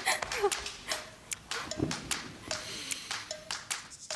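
Quick, irregular footsteps on a wooden stage floor as someone walks briskly away. Under them run a few short, flat musical notes.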